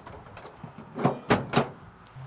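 Steel tailgate of a Ford Ranger pickup swung up and slammed shut. Three clanks come in quick succession about a second in, the middle one the loudest as it latches.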